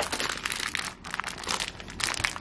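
Plastic packaging crinkling as shopping items are handled, in a run of quick, irregular crackles.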